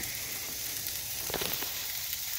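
Raw ribeye steaks sizzling steadily on a hot charcoal grill grate, with a few faint crackles about a second and a half in.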